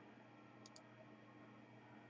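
Near silence: room tone, with a faint double click of a computer mouse a little under a second in.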